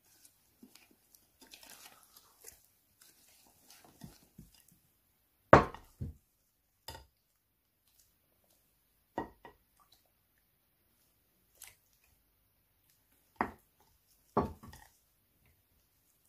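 Plastic spatula scraping and stirring a gritty sugar-and-coffee scrub in a glass dish, with faint gritty scraping at first, then several short sharp knocks against the glass. The loudest knock comes about five and a half seconds in.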